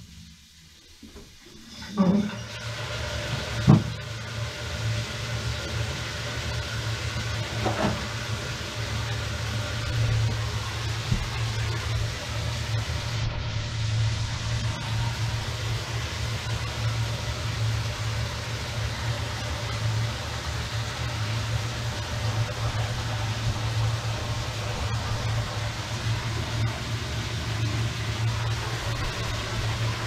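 An electric drain snake's motor runs steadily with a low hum, starting about two seconds in after a couple of sharp knocks.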